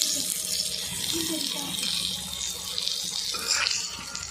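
Potato chunks frying in hot oil in a black iron wok, a steady sizzling hiss.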